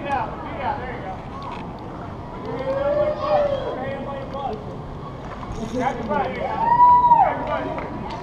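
A person's voice making two drawn-out calls that rise and fall in pitch, the second higher and louder, about three and seven seconds in, over steady background noise.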